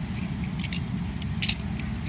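Plastic parts of a Megatron transforming robot toy clicking as its arm joints are pulled apart and turned by hand: a handful of short, sharp clicks over a steady low background rumble.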